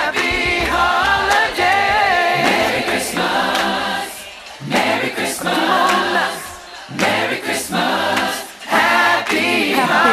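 Music: a group of voices singing a song together over a bass line, in phrases broken by short pauses.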